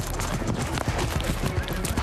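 Football helmets and shoulder pads clacking in quick, irregular knocks as linemen collide in a blocking drill.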